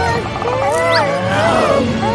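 A cartoon character's wordless vocal sound, a drawn-out voice that wavers up and down in pitch in several swoops, over background music.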